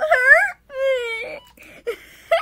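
A boy's high-pitched mock wail: two drawn-out, wavering cries, the second falling in pitch and ending about a second and a half in.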